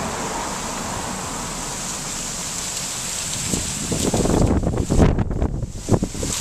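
Steady road and wind noise of a moving car, growing into a louder, uneven low rumble with buffeting from about four seconds in.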